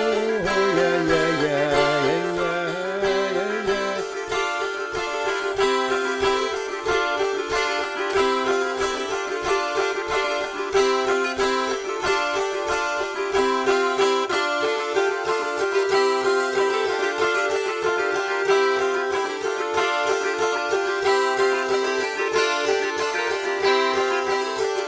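Russian gusli plucked by hand, playing a repeating dance-tune figure over a steady drone note.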